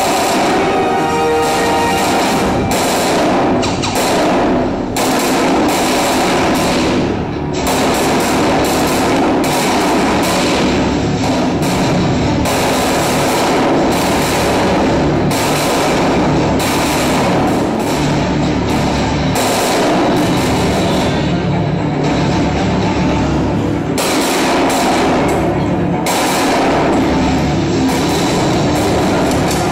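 Film soundtrack: continuous music mixed with gunfire sound effects from a battle scene.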